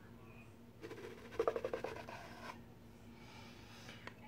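Wooden sliding lid of a cigar box being pulled out along its grooves: a scratchy scrape of about a second and a half, starting about a second in.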